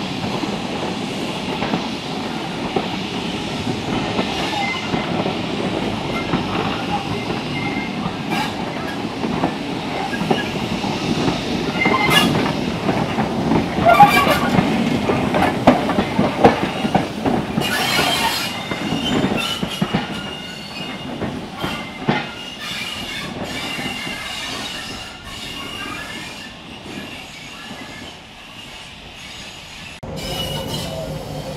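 A train of coaches hauled by a small steam saddle-tank locomotive rolls slowly past with a steady rumble, wheels squealing and clicking over the rail joints. It is loudest in the middle as the locomotive goes by, then fades.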